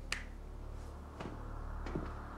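A hand lightly patting a man's cheek gives a sharp pat right at the start. A couple of fainter taps follow later, over a low steady hum.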